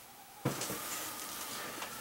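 Quiet room tone: a steady, faint hiss that starts abruptly about half a second in, after near silence, as where two recordings are joined.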